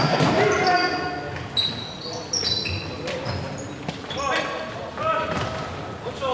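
Futsal play on a wooden sports-hall floor: shoes squeaking in short high squeals as players turn, and the ball being struck a few times, with players calling out.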